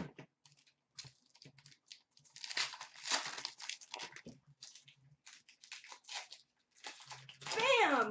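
Hockey card pack wrappers being torn open and crinkled in the hands: short crackles, with a longer stretch of tearing and crinkling about two to four seconds in. Near the end a high, wavering voice-like sound begins.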